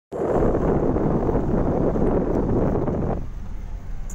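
Wind buffeting the microphone at the open window of a moving off-road vehicle, over a low engine and road rumble. The wind noise cuts off suddenly about three seconds in, leaving the low rumble.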